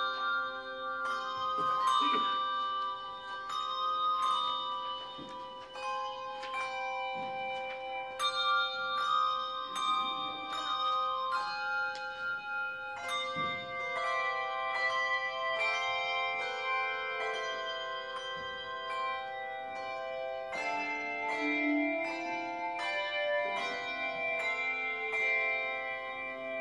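Handbell choir playing a piece: many handbells struck in chords and melody lines, each note ringing on and overlapping the next, over one steady held middle note.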